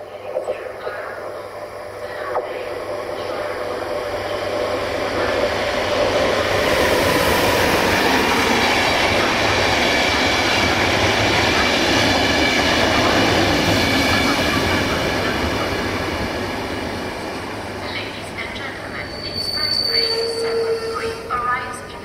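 Passenger train hauled by a Bombardier Traxx electric locomotive running past along the platform, growing louder as the coaches go by and then fading. There is a short squeal from the wheels near the end.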